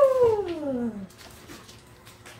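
A single drawn-out, meow-like call that slides down in pitch and fades out about a second in.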